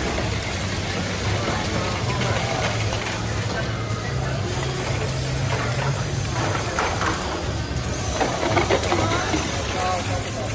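VEX competition robots' motors and intake mechanisms whirring and clattering under a steady din of crowd chatter and background music.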